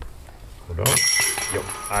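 A disc striking the chains of a disc golf basket: a sudden metallic crash about a second in, followed by the chains jangling and ringing.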